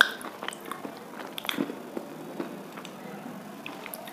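Close-miked chewing of something brittle, with a sharp loud crunch right at the start and then a run of smaller crackles and clicks as it is ground between the teeth.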